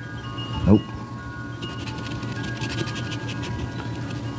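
A scratch-off lottery ticket being scratched: a quick run of short rasping strokes for a second or two in the middle. Steady chime-like tones ring underneath.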